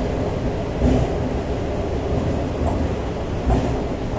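Shanghai Metro Line 4 subway car running, heard from inside the carriage: a steady low rumble of wheels on track, with two heavier thumps, about a second in and near the end.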